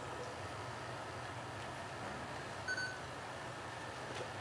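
Hushed room of people standing in a minute's silence: a steady low hum of the room, with one short electronic beep about two-thirds of the way through.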